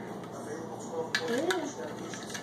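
Two light clinks of a metal spoon against a ceramic bowl a little after a second in, with a short wordless vocal sound between them.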